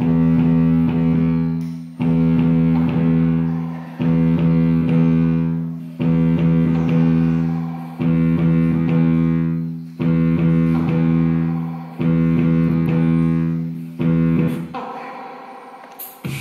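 Korg Electribe ESX-1 sampler playing a looped pattern: a low, sustained sampled tone struck every two seconds, eight times, each fading before the next. The loop dies away near the end.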